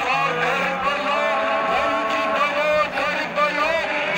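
A man chanting a nauha, a Shia lament, into a microphone over a loudspeaker, in a long melodic line with a wavering, bending pitch.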